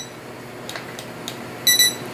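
Escali handheld infrared thermometer beeping: one short electronic beep right at the start, then a quick double beep near the end as it shows its surface reading.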